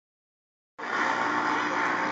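Steady, fairly loud background noise with a faint low hum, starting abruptly a little under a second in.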